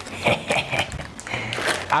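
A man laughing in short bursts.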